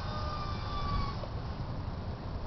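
Distant siren wailing: one thin tone sliding slowly down in pitch and fading out about halfway through, over a steady hiss of background noise.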